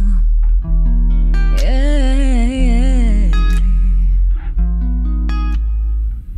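R&B band playing live: electric guitar and keyboard chords over a deep low end. A woman's voice sings a held, wavering line about two seconds in.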